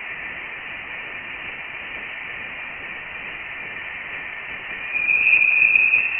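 Sonified Voyager 1 plasma wave instrument recording: a steady radio-like hiss with faint tones along its top edge, swelling into a louder, higher tone about five seconds in. It is the interstellar plasma vibrating around the spacecraft, its pitch rising with the density of the gas beyond the heliosphere.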